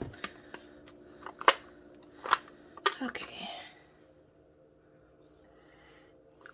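Thin aluminium foil loaf pan flexing and popping as a solid wax-melt loaf is worked loose from it: four sharp clicks in the first three seconds, with a brief crinkle after the last.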